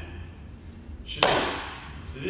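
A single sharp stamp of a leather dress shoe on a wooden floor a little over a second in, a foot landing in lezginka footwork, with a short echo after it.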